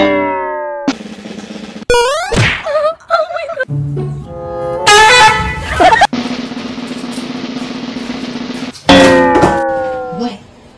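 Edited-in cartoon-style sound effects and music that change abruptly every second or two, with falling pitched tones at the start and again near the end and a rising glide about two seconds in.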